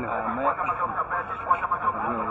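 Background speech: voices talking more quietly than the close-up interview voices.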